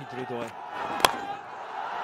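Cricket bat striking the ball once, a sharp crack about a second in, over a steady crowd hum.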